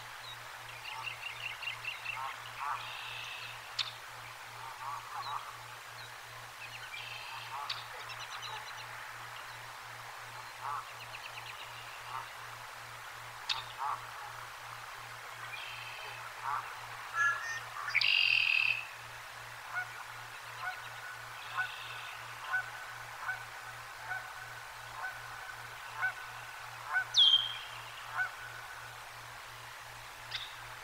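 Wild birds calling around the nest: short chirps, trills and whistles every second or two, with a louder call about eighteen seconds in. A faint steady low hum lies beneath.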